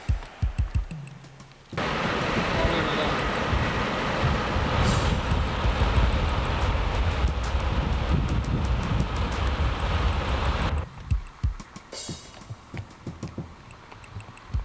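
Drum-kit music, with a stretch of loud rushing road and wind noise from a moving car laid over it, cutting in sharply about two seconds in and cutting out sharply a few seconds before the end.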